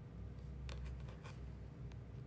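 Quiet room tone with a steady low hum and a few faint, soft clicks and rustles of handling.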